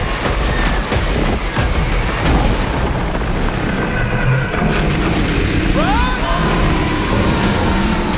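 Trailer sound design: deep booms and a heavy rumble of fire and explosions, mixed under dramatic score. About six seconds in there is a brief rising-and-falling cry.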